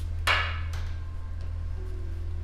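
Steady low droning background music, with one short, sharp hit about a quarter second in and a fainter click shortly after.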